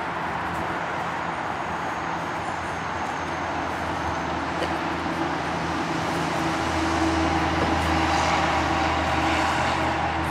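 A steady mechanical rumble with a low hum, growing louder about two-thirds of the way through.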